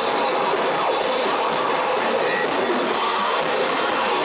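Live rock band playing loudly: electric guitars, bass and drums in a dense, unbroken wall of sound.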